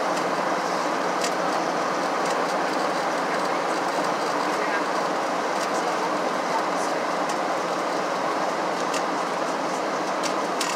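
Steady cabin noise inside a Boeing 737-700 on descent: the even rush of air along the fuselage blended with the drone of its CFM56-7B turbofan engines, unchanging in level, with a few faint ticks.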